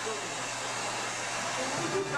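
Handheld hair dryer running steadily with an even rushing blow, as a member's hair is dried and styled in a dressing room.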